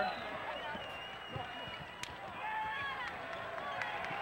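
Arena crowd murmuring through live basketball play, with short squeaks of sneakers on the hardwood court in the middle stretch and a single sharp knock about two seconds in.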